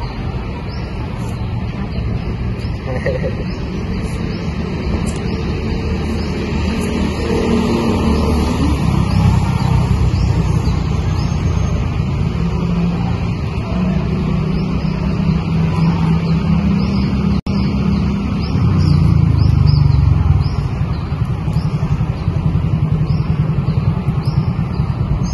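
Steady low outdoor rumble that swells twice, with faint high chirps repeating about once a second and a brief dropout about three-quarters of the way through.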